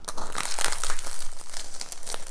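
The crisp crust of a giant Yorkshire pudding crunching and tearing as it is bitten into and chewed close to the microphone: a dense run of fine crackles.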